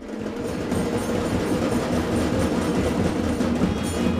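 Music with percussion starts abruptly and plays at a steady level with a regular beat.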